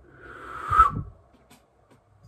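A person's long, forceful breath out through pursed lips, swelling over about a second with a faint whistle in it, then stopping.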